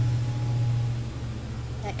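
A low, steady hum that eases off slightly through the pause, most like a vehicle engine running close by.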